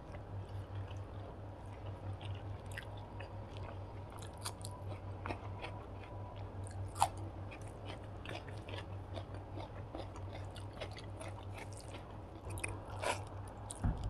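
Close-miked eating sounds: a mouthful of rice and curry being chewed, with small wet clicks and crackles as fingers mix rice on the plate, over a steady low hum. A sharper click comes about halfway through, and a louder flurry near the end.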